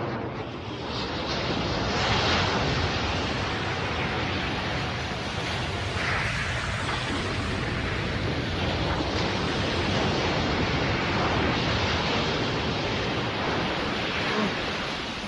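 Cartoon sound effect of a blast throwing up a huge spray of sea water: a long, steady rushing noise of churning water and spray that swells a few times.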